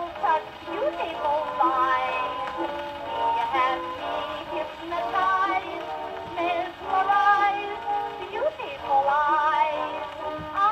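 An Oxford shellac disc record playing on an acoustic gramophone with a soundbox reproducer: a woman singing over an instrumental accompaniment. The tone is thin and narrow, with little bass or treble.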